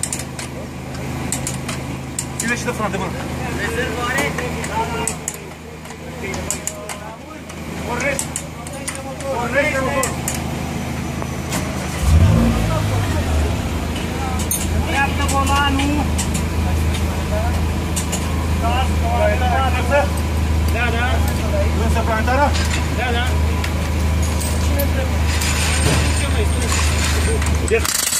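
A Dacia Logan rally car's engine starting about twelve seconds in, then idling steadily. Before it there are voices and light metallic tool clinks.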